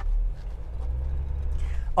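Jeep Wrangler Rubicon engine running at low revs as the 4x4 creeps along a dirt track, a steady low drone.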